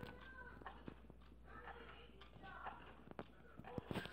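Pocket-watch-style wall clock ticking faintly, heard close up, about once a second: the sign that its movement is still running.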